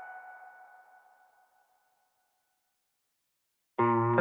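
Background music: the ringing, echoing tail of an electronic track fades away over the first two or three seconds, then silence, then a new track of plucked guitar notes starts near the end.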